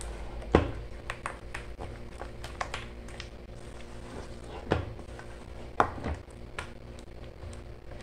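A spatula stirring a soft, wet bread-yeast sponge in a stainless steel bowl, with irregular taps and knocks against the metal as it is mixed; a few louder knocks stand out, about half a second in and twice near the middle.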